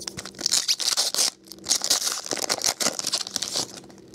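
A foil baseball card pack wrapper being torn open and crinkled by hand, in two spells of rustling with a brief pause about a second and a half in.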